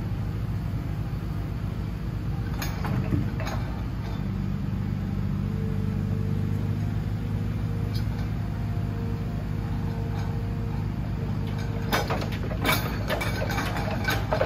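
Forestry forwarder's diesel engine running steadily while its hydraulic log crane works, with a fainter higher tone that comes and goes. Wooden clunks of logs and grapple knocking about three seconds in, and a cluster of clunks near the end as the grapple comes down onto the load.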